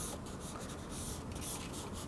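A drawing tool scratching across a paper easel pad in a run of short, quick strokes as a figure sketch is laid in.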